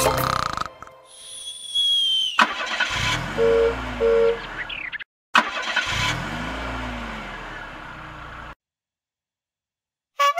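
Cartoon car sound effects: a car engine revving up and back down with two short horn beeps, then a second rev that cuts off suddenly. A brief high whistling tone comes before the engine.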